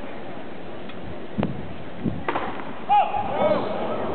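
Stadium crowd murmur with two sharp knocks about a second apart, like a tennis ball being struck or bouncing, followed near the end by nearby spectators talking.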